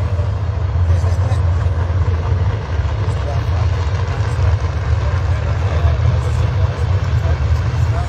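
Drag race car engines idling at the far end of the track, heard as a steady low rumble over the murmur of a grandstand crowd.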